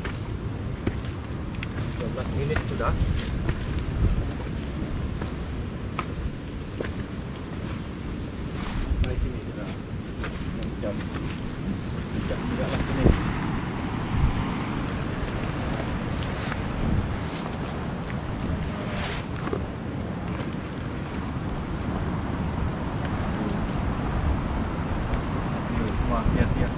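Footsteps on a rocky, leaf-covered forest trail, with scattered short knocks and scuffs over a steady low rumble of wind on the microphone.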